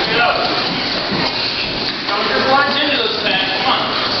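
Indistinct voices talking in a large hall, with no clear words.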